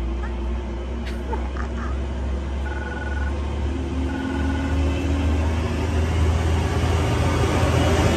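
Gate intercom call box ringing: two short electronic ring tones about a second apart, a few seconds in, over a steady low rumble.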